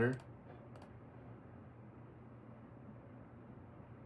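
A few faint clicks of a computer mouse in the first second, then only faint room hiss.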